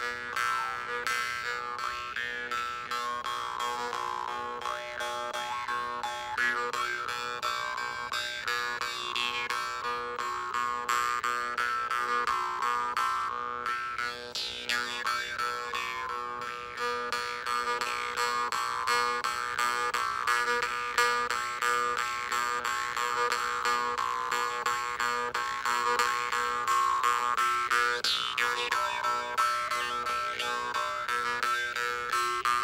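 Two jaw harps (vargans), both tuned to B, played together in rapid steady plucking. They sound a continuous low drone, with whistling overtones sweeping slowly up and down above it.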